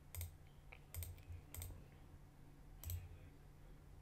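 Four faint, sharp clicks from computer input while working a charting program, irregularly spaced.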